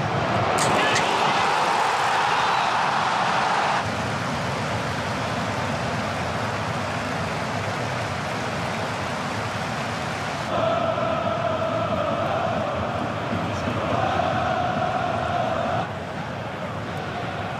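Football stadium crowd sound: a loud swell of cheering as the shot goes in, cut off after about four seconds, then steadier crowd noise with a long sustained chant in the last five seconds.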